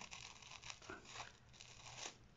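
Scissors cutting around a folded stack of tissue paper: faint, crisp snips about four a second, with light paper rustling.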